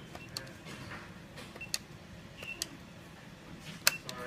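Sharp clicks of the push-buttons on a keypad control unit being pressed one after another, four or five in all, the loudest near the end. A faint short high beep comes with some of the presses.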